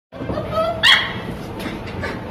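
Belgian Malinois puppies whining and yipping, with one sharper, louder yelp a little under a second in.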